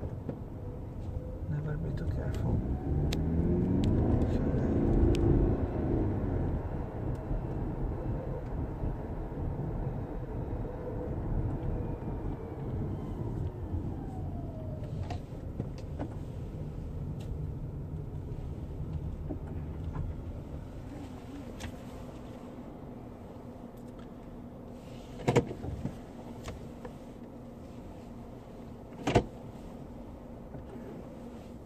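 Car cabin sound while driving: engine and road noise swell as the car pulls away through an intersection, run steadily, then drop lower as it slows and stops at the kerb. Two short sharp clicks come near the end.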